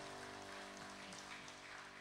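The last chord of a live worship band ringing out and slowly fading, held keyboard and guitar tones dying away over a faint room hiss.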